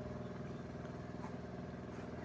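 Steady mechanical hum of a running motor in the background, a constant pitched drone with a faint regular flutter.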